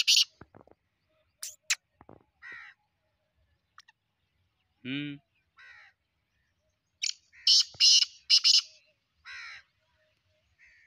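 A caged francolin (partridge) calling: a loud run of harsh, scratchy notes about seven seconds in, with fainter single calls scattered before it and near the end.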